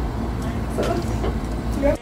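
A woman's brief speech over a steady low rumble, with short rustles of a hoodie being handled; everything cuts off abruptly at the end.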